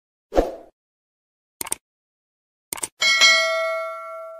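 Sound effects for a subscribe-button animation: a short thump, two pairs of quick mouse clicks, then a bright bell ding about three seconds in that rings on and slowly fades.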